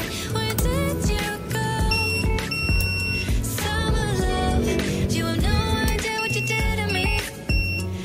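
Pop song with singing, overlaid with several high-pitched electronic beeps from an inverter control panel's buzzer as its buttons are pressed. The longest beep comes about two to three seconds in, and shorter ones come near the end.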